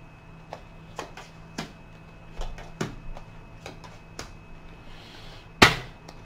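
Tarot cards being handled and laid on a table: scattered light clicks and taps, with one sharp, louder slap about five and a half seconds in.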